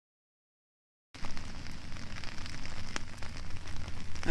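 About a second of dead silence, then outdoor background noise starts abruptly: a steady hiss over a low rumble, with a few sharp clicks.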